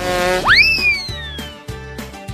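Background music with a steady beat, overlaid with a cartoon sound effect: a short buzzy tone, then a whistle that sweeps up fast and slowly slides back down.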